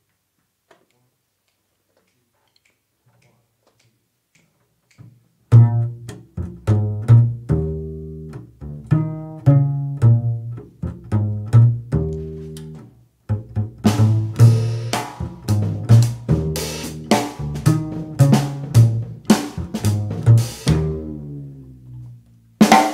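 Upright double bass plucked in a jazz line, opening a tune alone after a few seconds of near silence. About eight seconds after the bass starts, a drum kit's cymbals come in, keeping time with it.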